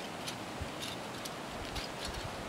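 Steady outdoor background noise with a few faint, sharp ticks and soft low bumps scattered through it.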